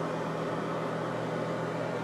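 Steady low hum with an even hiss over it: room background noise, with nothing else happening.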